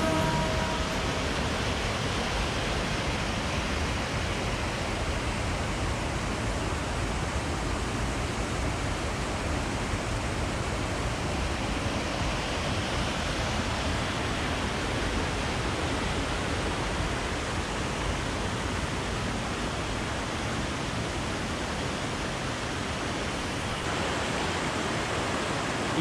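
Fast, muddy stream in spate rushing and cascading over rock slabs and small drops: a steady, unbroken rush of water.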